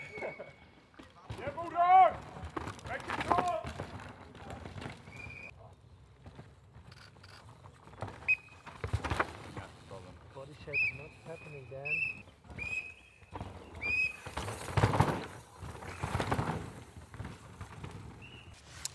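Spectators shouting encouragement as downhill mountain bikers race past on a dusty forest track. Short, high whistle-like tones repeat several times through the middle, and a loud rush of noise comes about two-thirds of the way in.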